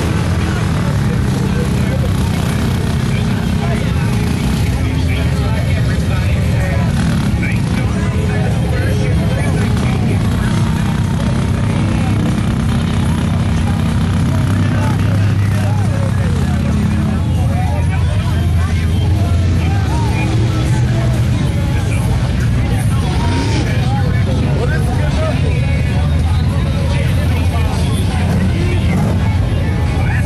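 Truck engines rumbling steadily in a mud hole, with scattered crowd voices and shouts over them.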